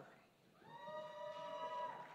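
A single faint, distant voice in the crowd calling out one long held 'woo', cheering a graduate's name. It starts about half a second in and lasts about a second and a half.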